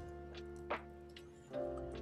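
A few separate computer keyboard keystrokes, one click louder than the rest a little under a second in, over quiet background music of held tones.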